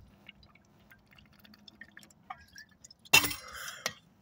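Faint swallowing and small liquid clicks while drinking from an insulated water bottle. About three seconds in comes a sudden loud breath out as the drinking stops, with a sharp click just after.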